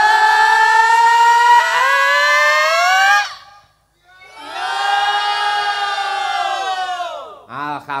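Several voices, led by a female singer on a microphone, holding a long shouted 'yeah' call that rises in pitch and breaks off about three seconds in. After a brief silence, a second long call starts high and slides down, fading out near the end.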